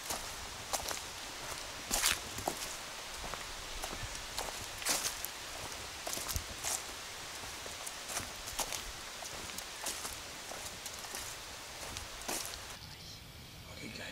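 Footsteps walking along a dirt woodland path strewn with dry leaves, an uneven crunch of one or two steps a second. The steps stop near the end.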